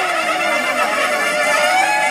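A large crowd of children shouting and cheering together, many overlapping voices.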